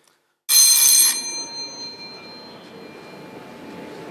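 A bell rung once, briefly, about half a second in, then ringing on and slowly fading. It is the theatre bell signalling the start of the play.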